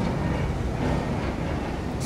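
Steady low rumble of background noise with no clear events in it.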